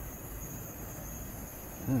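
Steady low outdoor rumble of wind and sea washing against the sea wall, with no distinct events.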